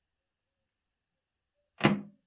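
Near silence, then a single short thump near the end, handling noise from a thumb pressing on a smartphone's screen.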